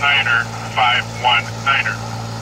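A broadcast voice reads out MAFOR code digits ("one, one…") through a handheld VHF marine radio's small speaker, sounding thin and narrow. A steady low hum runs beneath.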